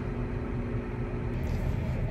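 Steady low engine hum of a farm vehicle, heard from inside its cab, with a faint steady whine above it.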